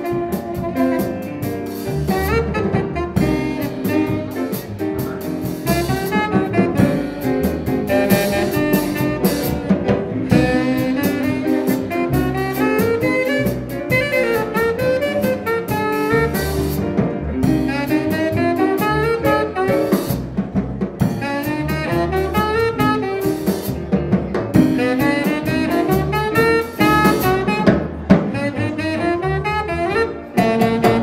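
Small jazz band playing live: saxophone over piano, double bass and drum kit.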